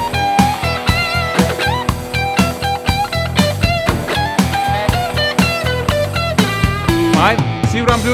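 Electric guitar soloing over a mid-tempo backing track of drums and bass on one E chord. It plays a short repeated phrase with string bends and slides, and ends with wide bends near the end.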